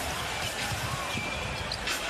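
A basketball being dribbled on a hardwood court, with repeated bounces heard over the steady noise of an arena crowd.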